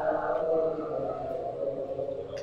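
Chanted recitation in a man's voice: one long drawn-out tone that slowly falls in pitch and fades out about a second and a half in.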